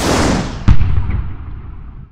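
Logo-intro sound effect: a loud whoosh that darkens as it fades, with a deep boom hit about two-thirds of a second in, then tailing away.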